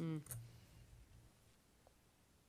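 A brief murmured "mm" and a single sharp click just after it, then quiet room tone with one faint tick near the end.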